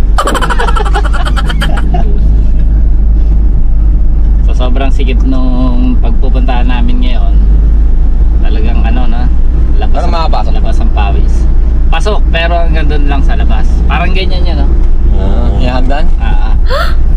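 Steady low rumble of a cab-over delivery truck driving, heard from inside the cab, with men's voices talking and laughing over it.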